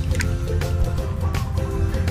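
Background music with a steady beat and a simple repeating melody.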